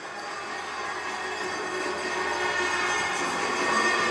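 Ice-hockey rink ambience, with skates on the ice and the arena around them: a steady, noisy hiss that grows gradually louder.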